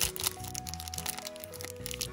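Foil blind-bag wrapper being pulled open and crumpled in the hands, a run of sharp crinkles and crackles, over background music.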